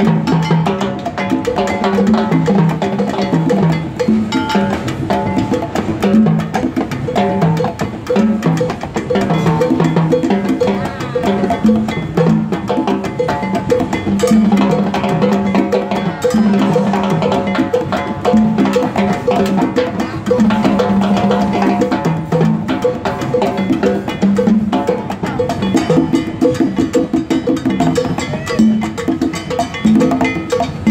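Live Latin percussion jam: congas played with the hands ring out repeated pitched tones, under timbales and cymbals struck with sticks and a hand-held block beaten with a stick in a steady pattern.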